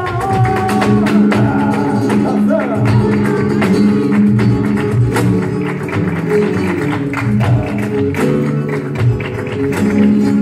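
Live flamenco music: acoustic flamenco guitars strumming and picking an instrumental passage over sustained chords, with little singing.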